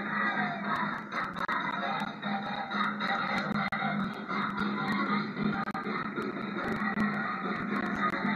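Music playing from a television broadcast, heard through the set's speaker and picked up in the room.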